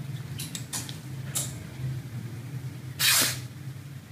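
Tailor's scissors snipping through silk cloth a few times in the first second and a half, then a louder swish of the cloth being gathered up about three seconds in, over a steady low hum.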